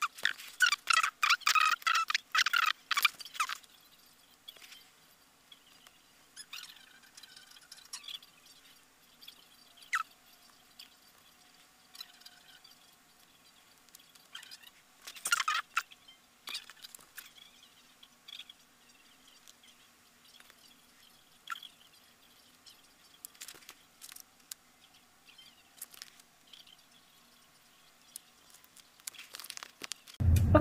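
Close hand-sewing noises from paper-backed fabric hexagons being handled and stitched with needle and thimble. There is dense crinkling and clicking for the first three or so seconds, then only sparse faint ticks and rustles, with one louder rustle about fifteen seconds in.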